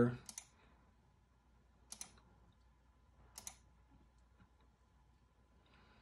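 Two short, sharp clicks about a second and a half apart, from working a computer while paging through an on-screen document.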